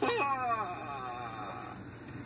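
A voice giving one long whining cry that falls in pitch and fades away over about a second and a half.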